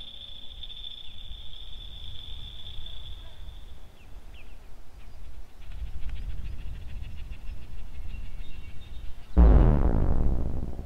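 Live electronic synthesizer music: a steady high tone that stops about four seconds in, over a low rumble that grows stronger after about five and a half seconds, then a loud low pitched tone that enters suddenly near the end.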